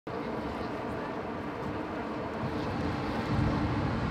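Outdoor street ambience: a steady rumble of vehicle traffic that grows a little louder toward the end.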